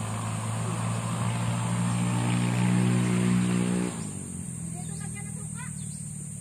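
A motor vehicle engine running at a steady pitch, growing louder, then dropping off sharply about four seconds in to a lower steady hum.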